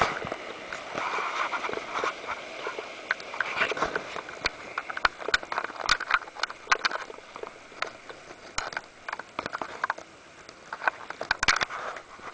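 Whitewater of a river rapid rushing around a raft, broken by many irregular sharp splashes. The splashes are busiest in the first half, ease off, then come in a quick cluster near the end.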